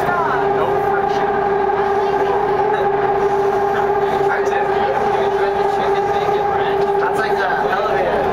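A Canada Line electric train running at steady speed through a tunnel, heard from inside the car. A steady whine in two tones sits over a continuous rumble of wheels on rail.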